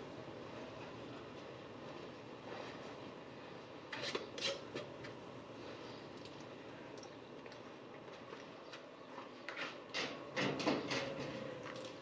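Faint clicks and knocks of glass canning jars and their metal lids being handled on a counter, over a steady low hiss. The knocks come in a cluster about four seconds in and again around ten seconds in.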